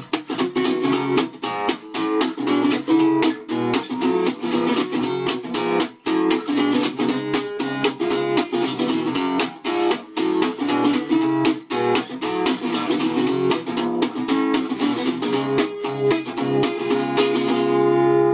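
Selmer-Maccaferri-style gypsy jazz guitar played with a pick: quick single-note lead lines with many fast picked attacks.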